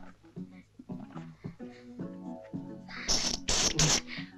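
Film score playing short notes, then near the end three quick loud splashes of water thrown in someone's face to revive them.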